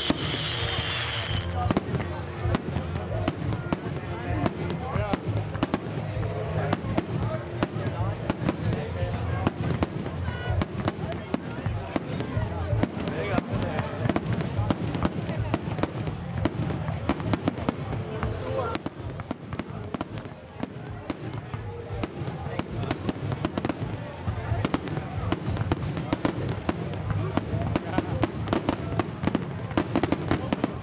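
Fireworks display: an unbroken, irregular string of bangs and crackles from aerial shells and bursts, growing denser near the end. A high whistling tone sounds in the first second or two.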